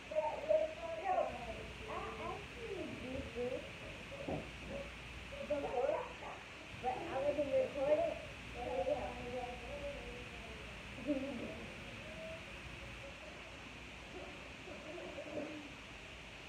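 A girl's voice making wordless, effortful murmurs and hums in bursts while she climbs a step ladder. The sounds come through most of the first eleven seconds, with a brief return near the end.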